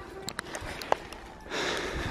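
A few faint clicks and knocks, then a half-second breath close to the microphone near the end.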